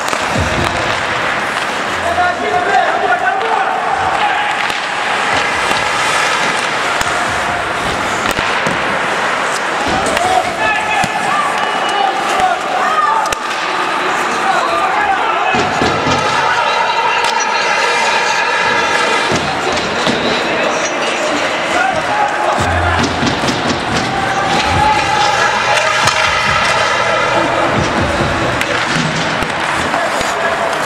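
Sound of an ice hockey game in a rink: raised, shouting voices carrying on without clear words, with scattered sharp knocks of sticks and puck.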